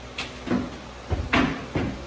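A few knocks and bumps of a wooden-framed stretched canvas being handled and shifted, the loudest just over a second in.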